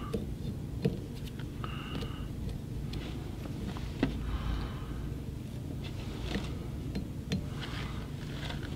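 Low steady room hum with a few faint ticks and soft rustles as fingers pick excess dubbing off a fly held in the vise.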